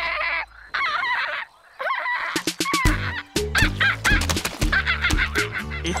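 A girl's voice making loud, high, wavering squawking calls in short bursts, used as echolocation calls to map her surroundings like a bat. Background music with a bass line and clicking percussion comes in about three seconds in under further calls.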